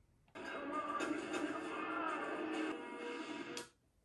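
Background music from a TV episode's soundtrack playing through the television, a steady held sound that comes in a moment after the start and cuts off shortly before the end.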